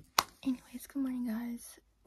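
A woman's voice making short vocal sounds that carry no clear words, one held at a steady pitch for about half a second, just after a single sharp click near the start.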